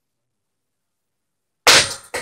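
Dead silence, then near the end a single sharp, loud percussive strike from the flamenco performance, the first beat of an uneven rhythm of strikes.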